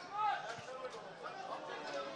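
Faint, distant voices at a football ground: players and a few spectators shouting and chattering, with one louder call near the start.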